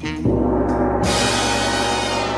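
A gong sound effect added in editing, struck about a quarter second in and ringing on, with a high shimmer swelling in at about one second.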